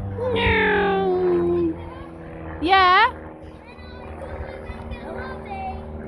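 A child's wordless vocal sounds: a long falling 'whooo' about a quarter second in, then a short rising-and-falling cry a second later, over a steady low hum.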